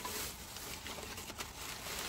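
Plastic bags and crumpled newspaper packing rustling as a hand rummages through them in a storage bin, with a faint tick about one and a half seconds in.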